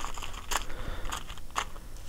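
Footsteps of a person walking, about one every half second, with a low rumble of camera handling underneath.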